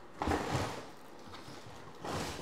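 Unpacking noise from a cardboard box: a short rustling scrape about a quarter second in, then softer rustling.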